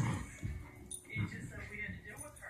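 Small dog whimpering, with a television voice talking in the background.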